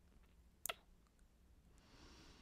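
Near silence broken by a single sharp, short mouth click about two-thirds of a second in, close on the microphone; a soft breath begins near the end.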